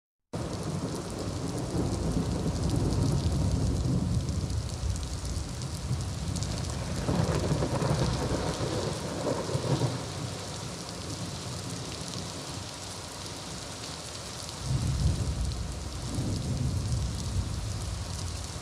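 Thunderstorm: steady heavy rain with rolling thunder, the rumbles swelling a few seconds in, again about seven seconds in, and near the end.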